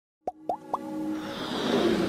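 Logo-intro sound effects: three quick pops about a quarter second apart, each sliding up in pitch, followed by a rising swell of music.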